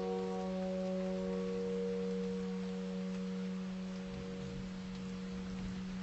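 A held piano chord ringing on and slowly fading, with no new notes struck.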